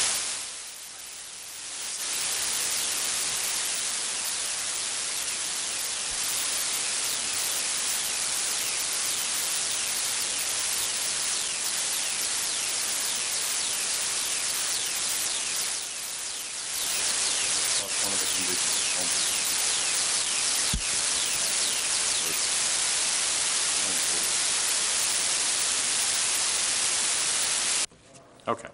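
Steady static hiss on the meeting's audio feed, dipping briefly about a second in and again around the middle, with a single click a little past the middle.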